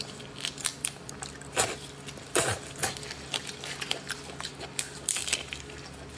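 Irregular crackling and sharp snaps of a large red shrimp's shell being pulled apart by hands in plastic gloves, with a few louder cracks along the way.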